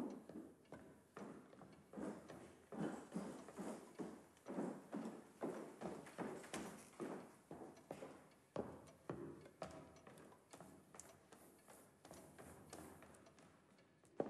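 Footsteps of hard-soled shoes on a hard floor, walking at about two steps a second and growing fainter toward the end.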